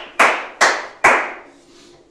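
A man clapping his hands three times, about two claps a second, each clap fading briefly in the room.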